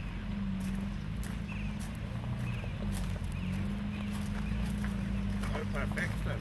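Slow-rolling cars idling at walking pace, the nearest a Porsche Carrera GT with its V10, giving a steady low engine hum. Tyres crunch and tick over loose gravel.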